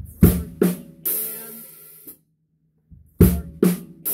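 Drum kit played slowly: two sharp drum strokes followed by a cymbal crash that is cut off after about a second. The two strokes come again about three seconds in.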